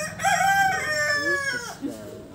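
A rooster crowing once, a single crow of about a second and a half that opens with a short note and then holds a long, slightly falling call.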